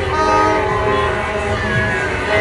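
Several horns sounding at once in overlapping steady tones over the noise of a street crowd, with a fresh blast starting just after the start.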